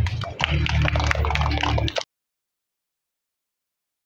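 A group of small children clapping irregularly over a low steady hum; the sound cuts off suddenly about halfway through.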